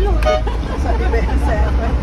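Steady low engine rumble inside a moving bus cab, with people talking in the background.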